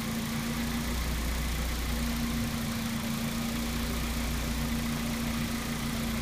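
2012 Hyundai Genesis Coupe 2.0T's turbocharged 2.0-litre inline-four idling steadily and quietly just after it first fires up, a steady low hum, while its cooling system is being filled and bled.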